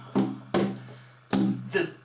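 Hand-held frame drum struck with the palm: a few sharp strokes, each fading quickly, with a low tone sounding beneath them. A man's singing voice comes in near the end.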